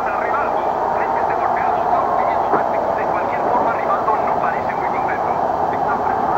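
Steady din of a large crowd, many voices blending together with no single voice standing out.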